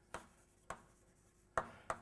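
Chalk writing on a blackboard: about four short, sharp taps of chalk striking the board, unevenly spaced, with faint scraping between.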